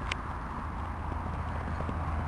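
Hoofbeats of a horse cantering on grass, under a steady low rumble.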